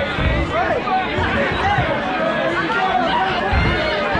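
Crowd of spectators in a hall, many voices talking and calling out at once in a steady babble.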